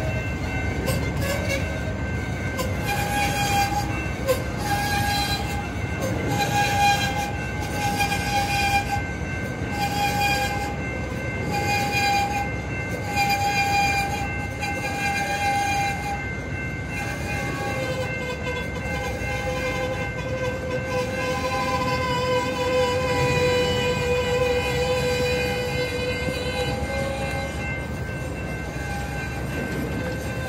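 Rail-laden freight cars rolling slowly past, wheels clicking over rail joints, with steady high squealing tones from the wheels. A level-crossing bell dings about once a second throughout.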